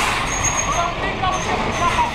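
Heavy truck's diesel engine running as the tractor-trailer creeps forward at low speed through a tight gap between parked trailers. A faint high whistle comes and goes twice.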